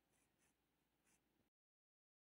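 Near silence: a few very faint, soft scratches of crochet cord and hook being handled, then dead silence from about one and a half seconds in.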